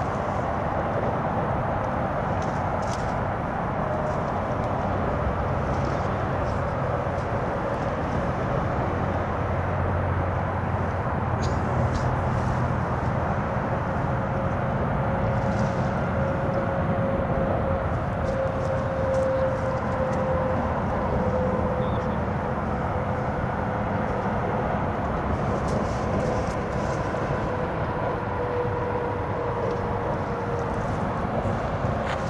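A steady low rumble of engine or traffic noise, with a faint droning tone that slowly falls in pitch over about twenty seconds.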